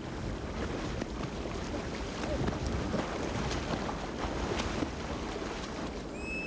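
Wind on the microphone over open sea water: a steady rushing with a few faint splashes of water.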